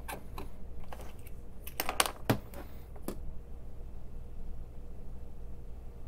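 A run of small sharp clicks and taps over the first three seconds, loudest about two seconds in, as small hobby tools are picked up from a rack and handled on a modelling bench; after that only a faint steady hum.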